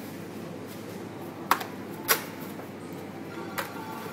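Steady background music and room noise, broken by two sharp knocks about half a second apart and a fainter knock near the end.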